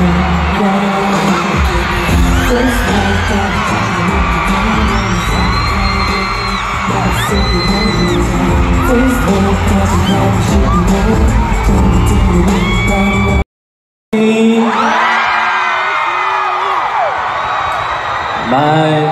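A man singing a pop song live into a microphone over a backing track with heavy bass, heard through concert loudspeakers. The sound drops out completely for about half a second late on, then the music resumes.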